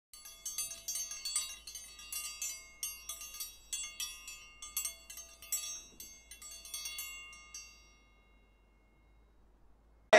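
Chimes tinkling: many irregular light metallic strikes with high ringing tones, thinning out and ringing away to silence about eight seconds in.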